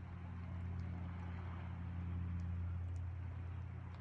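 A distant boat engine humming, low and steady.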